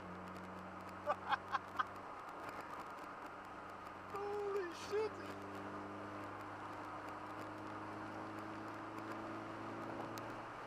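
Steady in-cabin drone of a car cruising on a highway, engine and tyre noise together. About a second in comes a quick run of four short pitched sounds, and around four to five seconds in a brief voice sound.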